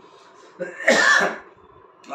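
A man coughs once, a short burst about a second in, during a pause in his speech.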